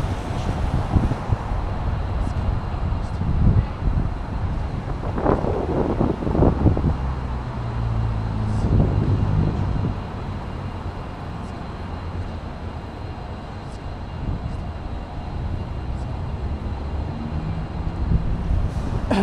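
City street traffic mixed with wind rumbling on the microphone. A vehicle engine hums steadily for a few seconds about midway.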